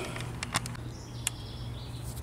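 Quiet outdoor background with a faint high bird chirping in the middle and a couple of light clicks from handling parts.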